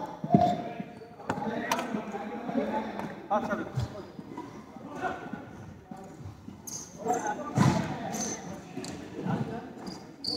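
Badminton rally: rackets strike the shuttlecock with several sharp hits a second or more apart, mixed with shoes squeaking and scuffing on the sports-hall floor, in a large hall.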